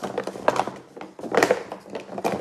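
Empty plastic Easter eggs rolling and knocking against the sides and floor of a tilted cardboard box, a few irregular thunks and clicks. Having no marble inside, they are light and stick in the wet paint rather than rolling freely.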